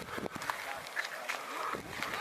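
Indistinct voices talking, with scattered short clicks and rustles.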